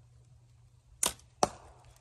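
A Bear Archery Royale compound bow being shot: the string releases with one sharp snap about a second in, and the arrow strikes the target with a second sharp smack about half a second later.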